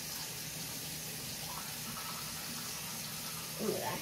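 Steady hiss of a bathroom tap running into a sink, under a faint low hum.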